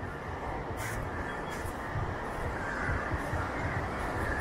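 Crows cawing over a steady rush of wind and beach noise on the microphone.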